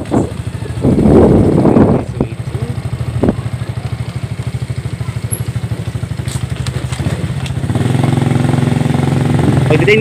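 Small motorcycle engine running at low road speed with an even pulsing beat; about three-quarters of the way in its note turns steadier and fuller. A loud rush of noise comes in the first couple of seconds.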